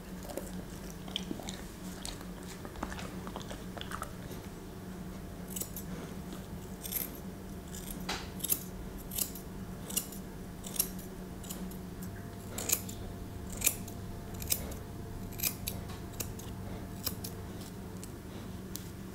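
Grooming scissors snipping the fur around a dog's paw, with a crisp snip about once a second starting a few seconds in.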